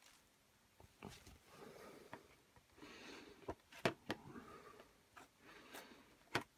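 Faint soft rustling and dabbing of a microfiber cloth blotting wet watercolour paper to lift paint, with a few light clicks in the second half.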